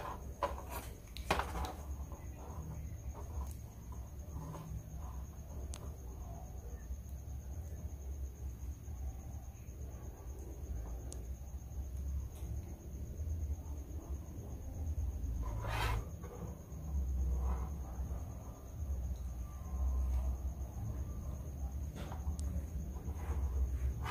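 Quiet handling sounds while soldering a wire onto a screw: faint clicks and rubbing of small metal parts and wire in the fingers, with a sharper click about two-thirds of the way in. A low rumble and a thin steady high whine run underneath.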